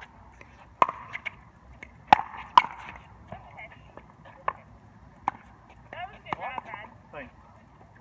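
Paddles striking a plastic pickleball in a rally: three sharp hits in the first three seconds, the loudest about two and a half seconds in. Two fainter knocks follow, and voices speak briefly near the end.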